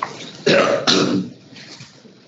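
A person clearing their throat in two short, harsh bursts, about half a second apart, in the first second.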